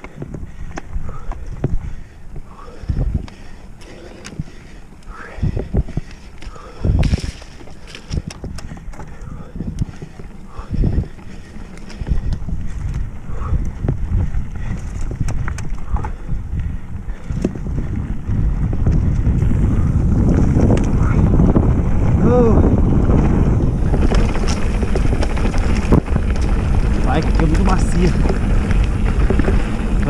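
Mountain bike ridden fast down a dirt singletrack: tyres rumbling over the ground, with sharp knocks and rattles from the bike over bumps. In the second half, wind noise on the camera microphone builds up and grows loud as the speed picks up.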